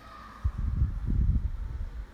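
Irregular low rumbling and bumping of handling noise on a workbench, starting about half a second in and stopping abruptly at the end.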